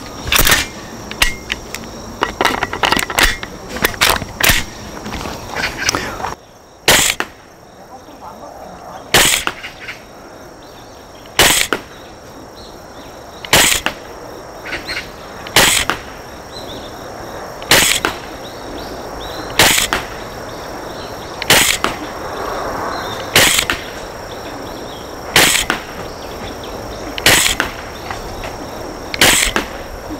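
Tokyo Marui MTR-16 G Edition gas blowback airsoft rifle firing: a quick cluster of shots and clicks in the first few seconds, then single shots at a steady pace of about one every two seconds, each a sharp crack with the bolt cycling.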